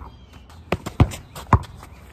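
Basketball dribbled on hard-packed dirt: three thuds, the first lighter, starting about halfway through and coming about half a second apart.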